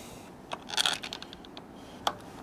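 Small metal screw and threadlock tube being handled: a short cluster of light scrapes and clicks a little over half a second in, with a few faint ticks after.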